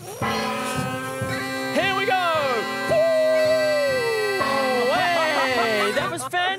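Bagpipes playing: a steady drone under wailing, sliding chanter notes, over the thuds of a bass drum beating a marching beat.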